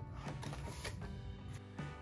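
A cardboard product box handled and turned in the hands, with light rubbing and several soft taps, over quiet background music.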